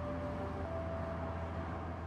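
Steady road-traffic rumble with a few soft, held tones over it that come and go.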